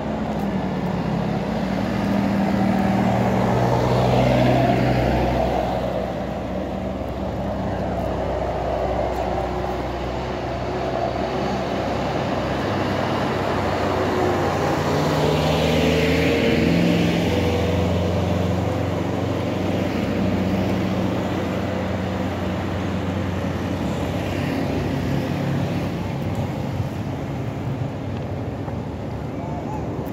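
Motor vehicles passing on a road, their engines swelling and fading as they go by. The loudest passes come about four seconds in and again around the middle, when a truck passes close.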